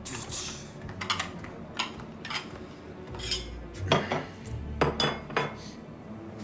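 Dishes and cutlery being handled at a kitchen counter: a string of sharp clinks and knocks, the loudest about four seconds in and again near five seconds, over a low steady hum.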